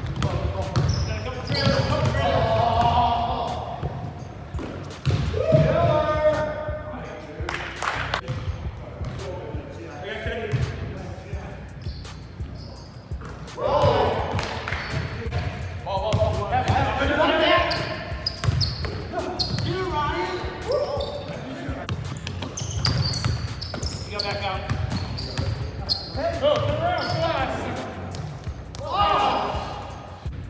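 A basketball bouncing on a hardwood court as players dribble, echoing in a large gym, with players' voices calling out at several points.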